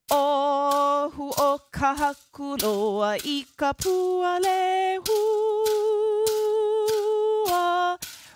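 A woman singing a Hawaiian hula mele unaccompanied, in long held notes with vibrato. Short crisp clacks from split-bamboo pūʻili break in between the notes.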